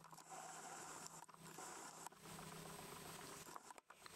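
Near silence: faint room tone with soft, faint rustles from a rough collie puppy pawing and nosing into a knitted blanket.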